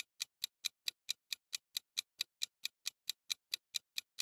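Countdown-timer sound effect: a fast, even clock ticking, about four and a half ticks a second.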